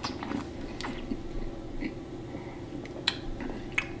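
A sip of beer taken from a glass and swallowed, with a few faint, sharp mouth clicks and lip smacks while tasting, over a steady low room hum.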